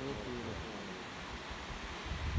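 Steady rushing noise of a distant tall waterfall, with wind buffeting the microphone as a low, uneven rumble.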